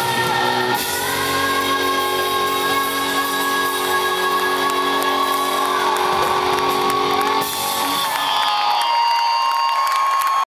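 Live rock band playing loudly through a PA: a singer's voice over electric guitar, with long held notes.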